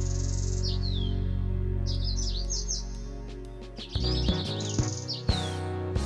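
Birdsong chirps, short falling calls, mixed over the instrumental accompaniment of a French hymn. A held chord fades away, then a new instrumental phrase of separate notes begins about four seconds in.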